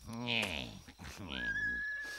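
A horse whinnying: a long call that falls in pitch and waves up and down. A single held high note comes in over its tail, about a second and a half in.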